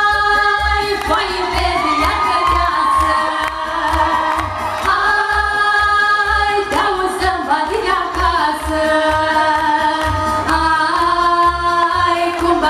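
Women's voices singing a Romanian folk song into microphones over a keyboard accompaniment with a steady bass beat.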